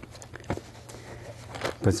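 A few light clicks and knocks from utensils and packaging being handled on a table, over a low steady hum; a man's voice begins a word at the very end.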